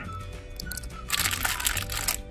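Plastic foil blind-bag packets crinkling as they are handled, with a burst of rustling from about a second in, over faint background music.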